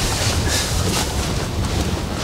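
Cabin noise inside a Volkswagen Touareg with the 3.0 V6 TDI diesel as it rolls slowly over the crest of a steep dirt slope: a steady low rumble under an even rushing noise.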